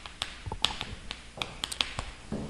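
Chalk tapping and clicking against a chalkboard as words are written: a quick, irregular series of sharp taps, bunched near the end.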